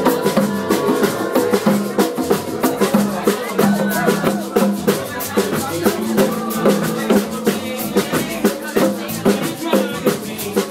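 Live band music: congas and a drum kit play a busy, steady groove with a shaker, over held low pitched notes.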